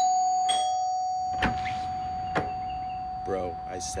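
A bell-like chime struck twice about half a second apart, the second note slightly lower, ringing on and slowly fading. Two sharp clicks come during the ring.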